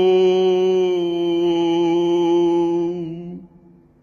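A man's voice holding the final long note of a Byzantine chant hymn, one steady pitch over a steady low drone. The note ends about three and a half seconds in, leaving a faint fading tail.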